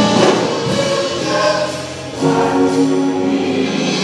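Church choir singing a gospel song. The sound dips just before halfway, then the voices come back in loud on long held notes.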